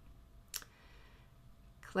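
A single sharp computer mouse click about half a second in, over faint room tone.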